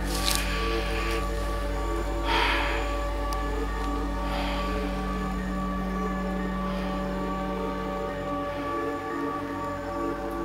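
Ambient background music of sustained drone tones. Over it come a few brief rustles, footsteps or brushing through dry vegetation.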